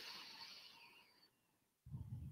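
A woman's quiet deep breath, a soft hiss that fades away over the first second, taken as she settles before channelling. Near the end comes a brief, low, muffled sound.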